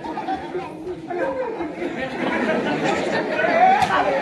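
Several voices talking over one another, as in crowd chatter, with a single sharp click near the end.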